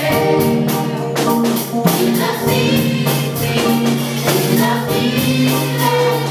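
A women's choir singing a gospel song in several parts, over a steady beat and a held low accompaniment note.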